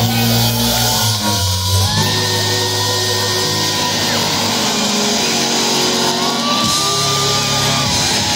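Live rock band playing in a large hall: long held notes with some gliding in pitch, and voices singing.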